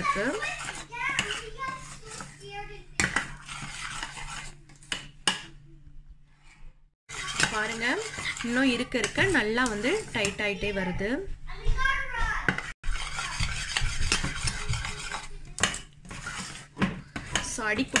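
A metal spoon scraping and clinking against the sides and bottom of a stainless steel saucepan, stirring a thick chocolate mixture of condensed milk and cocoa powder as it cooks down and thickens. The stirring pauses briefly about a third of the way in.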